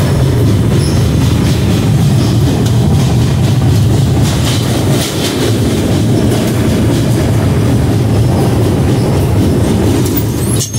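Train running across a steel truss bridge, heard from on board: a loud, steady low rumble of wheels on rails with some rattling clatter.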